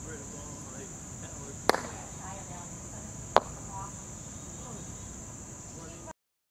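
Croquet mallet striking a ball with a sharp knock a little under two seconds in, followed by a second, louder knock about a second and a half later. A steady high-pitched insect drone and scattered bird chirps run underneath.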